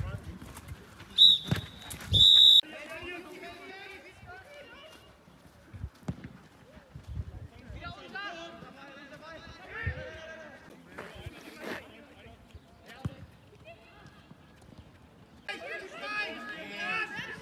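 Referee's whistle blown twice, loud and shrill: a short blast about a second in, then a longer blast just after, with voices calling on the pitch around it.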